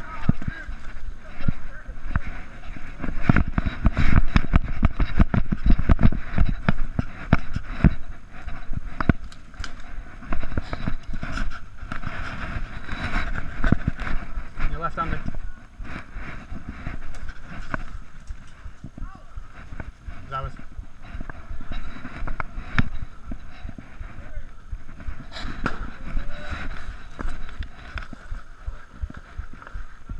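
Running footsteps with gear rattling and clothing rubbing against the chest-mounted camera, as an airsoft player moves across grass and through brush. The heaviest, fastest run of knocks comes in the first half; it turns lighter and slower after about 15 seconds. Indistinct voices sit faintly behind.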